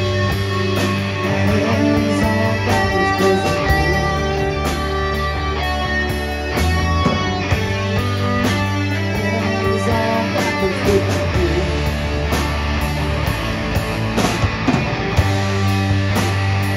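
Live rock band playing: distorted electric guitars over sustained electric bass notes and a drum kit keeping a steady beat.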